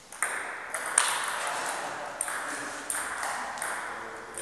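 Table tennis rally: a celluloid ball clicking sharply off the bats and the table, about half a dozen hits spaced roughly half a second to a second apart, the loudest about a second in.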